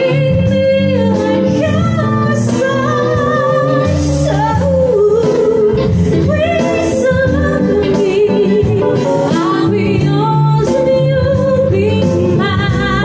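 A woman singing a melody with held, wavering notes into a microphone, over live acoustic guitar and keyboard accompaniment with a steady rhythm.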